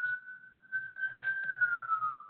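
A thin, steady whistling tone held at one pitch, sinking slightly lower near the end.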